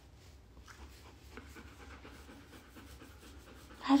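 A dog panting faintly.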